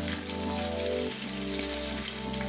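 Onions frying in oil in a wok, a steady fine sizzle, under background music whose sustained low notes change about a second in.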